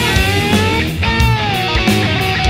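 Thrash metal recording: distorted electric guitar holding notes that bend in pitch, over bass and drums.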